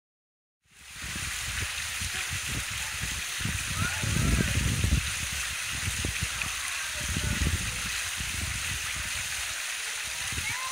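Fountain water pouring off the rim of a large stone bowl and splashing into the basin below, a steady rush that starts about a second in. Irregular low rumbles come and go under it, loudest around the middle.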